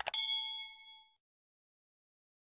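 A click, then at once a bell ding sound effect for a subscribe button's notification-bell icon, one ring that dies away over about a second.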